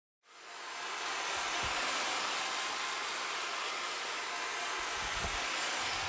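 Electric drill with a paddle mixer running steadily, churning fine clay plaster in a plastic bucket. The sound fades in over the first second.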